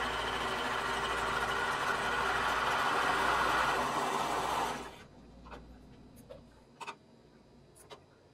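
Serger (overlock machine) running steadily at speed, stitching and trimming as it sews cotton elastic onto the edge of knit swimsuit fabric, then stopping abruptly about five seconds in. After it stops there are a few faint clicks.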